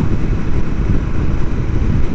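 Royal Enfield Continental GT 650's parallel-twin engine running steadily at highway cruising speed, mixed with heavy wind rumble on the camera microphone.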